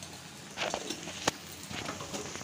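Spiced jackfruit and potato pieces frying in a steel kadhai: a steady low sizzle with a few sharp clicks scattered through it.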